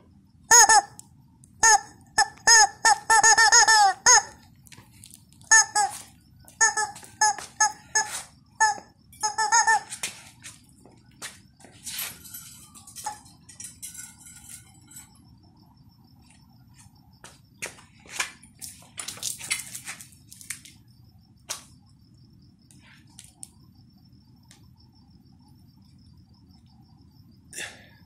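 Yellow rubber chicken squeezed again and again, giving a string of loud, wavering honking squawks over the first ten seconds. After that come scattered sharp clicks and knocks and a faint steady high-pitched chirring.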